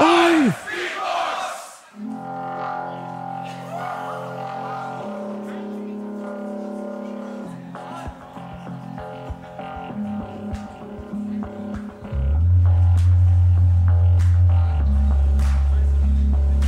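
Beatboxer building a live loop on a loopstation: layered, held vocal tones looped into a steady droning chord that changes pitch twice, with sharp mouth clicks over it. About three-quarters of the way through, a loud, deep bass layer comes in. It opens with a brief burst of crowd cheering.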